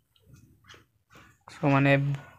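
Near silence with a few faint, soft rustles of a hand stroking a rabbit's fur. About one and a half seconds in, a man's voice starts a word.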